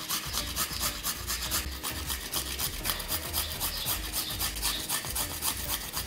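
Garlic clove rubbed over the fine teeth of a small handheld metal grater: a dry rasping scrape in quick, even strokes, several a second.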